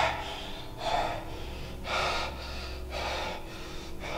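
A man breathing hard in loud, ragged gasps, about one breath a second.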